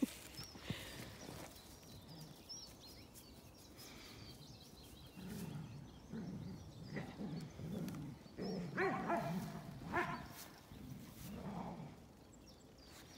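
Large black dog vocalising over his stick. After a quieter start come repeated low grumbles, then two louder, higher calls near the end.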